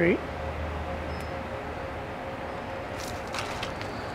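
Steady outdoor background noise with a low hum that fades out about a second and a half in, and a few brief faint clicks or rustles near the end.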